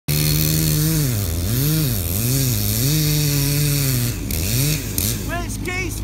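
Two-stroke chainsaw cutting into felled oak, its engine pitch dipping again and again as the chain bogs down in the wood and then picking back up. About four seconds in the engine eases off to a lower, quieter run.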